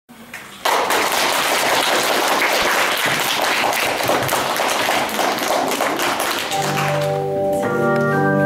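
Audience clapping, starting suddenly under a second in and fading near the end. As it dies away, sustained organ-like keyboard chords begin.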